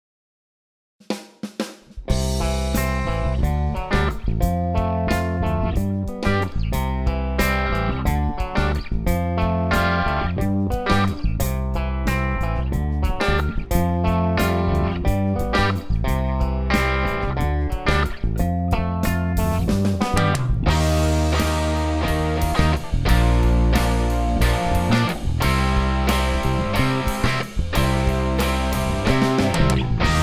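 Epiphone Wildkat hollow-body electric guitar with P-90 pickups, fingerpicked through a dry signal, with bass guitar and a drum kit playing along, as a tone comparison of metal and plastic pickup covers. After a second of silence a few notes come in and the full band is playing by about two seconds; the playing grows denser and fuller about twenty seconds in.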